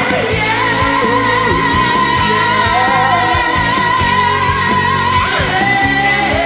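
Rock karaoke backing track with a steady drum beat, and a voice holding one long sung note for about four seconds before it moves on.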